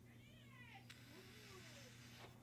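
Near silence: a faint, drawn-out animal-like call that arches and then slides down in pitch, one sharp click about a second in, and a low steady electrical hum underneath.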